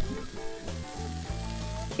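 Hamburger patty frying in an uncovered pan, a steady sizzle, under soft background music.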